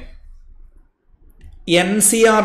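A short pause in a man's lecture speech, filled only by faint low room noise; his voice starts again near the end.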